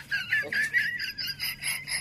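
Loud, high-pitched laughter: a run of short laughs, about four or five a second.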